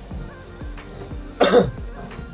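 Background music with a low, repeating bass beat, about three notes a second. About one and a half seconds in, a man gives a single short cough.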